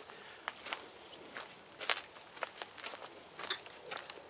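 Footsteps of a person walking on a path of dry grass and leaf litter: uneven crunching steps, the loudest about two seconds in.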